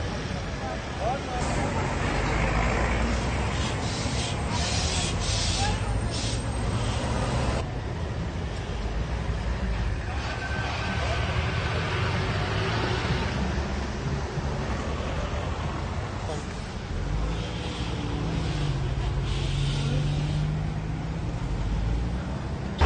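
Street ambience: road traffic noise with vehicles passing and people talking nearby. The background changes abruptly about eight seconds in, and a vehicle's engine hum rises and falls near the end.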